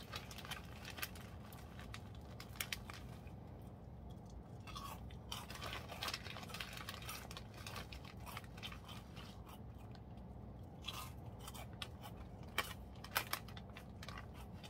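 A person chewing a crunchy spicy chicken snack close to the microphone: clusters of crackling crunches with short pauses between them, and a few sharper crunches near the end. A faint low hum sits underneath.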